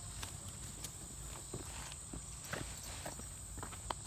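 Scattered light footsteps and scuffs on sandy ground around a tent laid out on the ground, over a steady high-pitched insect chorus.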